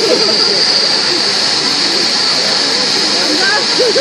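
Steady, loud rushing noise of the electric blower fan that keeps an inflatable bouncy castle blown up, running without change, with voices faintly over it.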